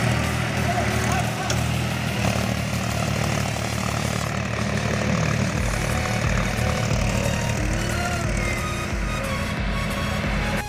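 Farm tractor diesel engine running hard while the tractor is bogged in a flooded, muddy paddy field, trying to pull free. Men's shouts and music are mixed in.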